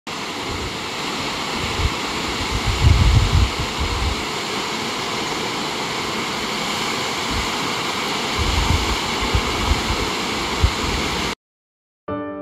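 Waterfall's falling water, a steady rushing hiss, with gusts of wind buffeting the microphone now and then. It cuts off suddenly near the end.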